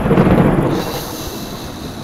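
A thunder sound effect: a loud crack and rumble right at the start, fading over about a second into a lower, steady hiss.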